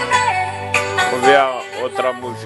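Music: a song with a voice singing a gliding melody over instrumental backing, played through a speaker.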